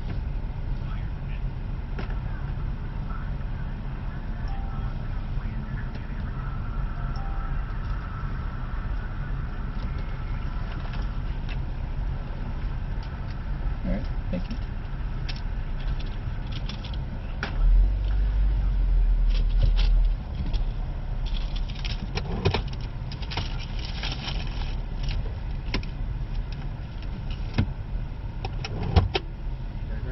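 Car engine idling steadily, heard from inside the cabin with the window open, with a louder low rumble for about two seconds past the middle. Scattered clicks and clatter come through the open window in the later part.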